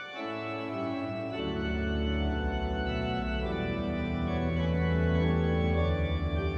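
Organ playing the introduction to the entrance hymn in sustained chords, with bass notes coming in about a second and a half in and the sound slowly growing louder.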